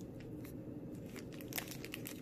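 Clear plastic treat bag crinkling lightly as it is handled: a few faint crackles, one a little louder about one and a half seconds in.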